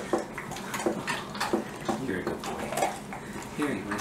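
Young Rottweiler-mix dog chewing a hard biscuit treat: a run of irregular crisp crunches.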